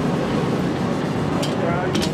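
Steady machine noise from a shrink-wrap sealer and heat-tunnel line, with two short sharp clicks about half a second apart near the end.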